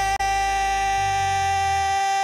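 Acoustic cover song: a singer holds one long, steady note after sliding up into it. The low accompaniment drops away near the end.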